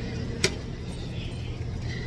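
A single sharp click about half a second in, over a steady low background hum.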